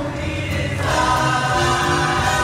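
A show choir singing a number with musical accompaniment, the voices swelling fuller and louder a little under a second in.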